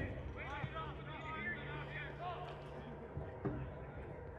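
Distant shouts and calls from soccer players and spectators across the field. Two dull thuds of the ball being kicked come through, one at the start and one about three and a half seconds in.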